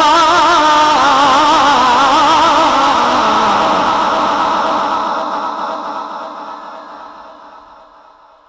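A man's voice holding one long, wavering, ornamented note of melodic Quran recitation into a microphone. The pitch drops lower about three seconds in, and the note then fades gradually away.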